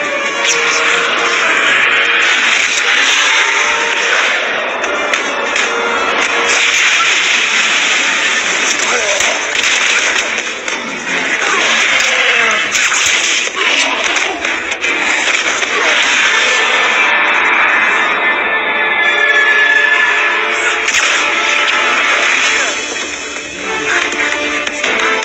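Action-film soundtrack: continuous loud music mixed with sound effects and voices.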